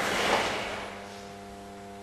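A group of karate students in gi moving together on a count: a swell of cloth swishing and feet shifting on the floor that peaks about a third of a second in and then fades. A steady electrical hum runs underneath.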